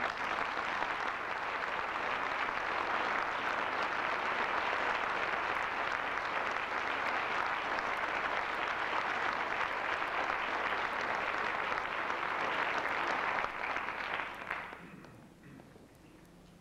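Audience applauding: a steady round of clapping that fades out near the end.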